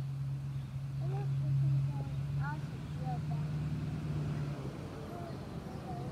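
A steady low engine hum that stops about three-quarters of the way through, with a few bird chirps over it.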